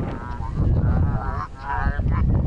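Players shouting on a football pitch: two loud, drawn-out calls, over wind rumbling on the microphone.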